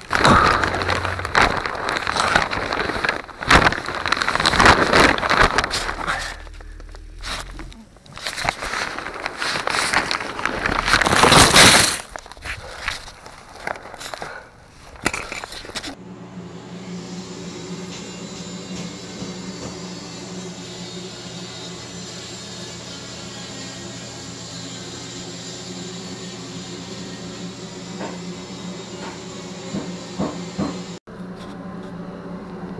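Loud irregular rustling, scraping and crackling of someone moving through fibreglass insulation and debris in a crawlspace. About sixteen seconds in, it gives way to a steady low electrical hum with a faint hiss.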